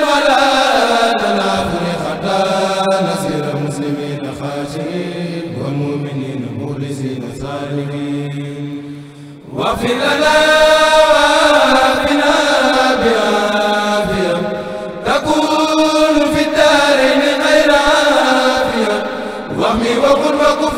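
A choir of men chanting a Mouride khassida in Arabic together, in long drawn-out held notes that slide slowly in pitch. The chant breaks off briefly about halfway, then the full group comes back in loudly.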